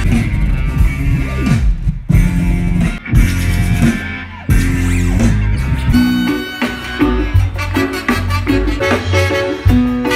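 Live band music with electric guitar, bass and drums, and horns alongside. The music changes abruptly several times as separate clips are cut together.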